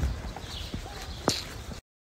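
Street background noise picked up by a handheld phone while walking, with low rumbling and knocking on the microphone and one sharp click about a second and a half in. The sound drops out abruptly just before the end.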